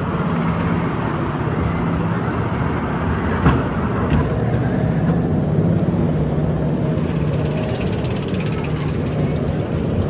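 Sierra Sidewinder spinning coaster car rolling along its steel track: a steady rumble with one sharp knock about three and a half seconds in.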